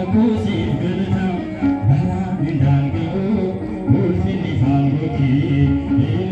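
Ethiopian Orthodox Tewahedo hymn (zimare) being sung, with musical accompaniment, continuing without a break.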